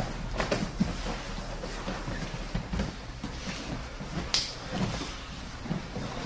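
Jiu-jitsu grappling on a foam mat: irregular thumps and scuffs of bodies, knees and cotton gis shifting against each other and the mat, with one sharp click about four and a half seconds in.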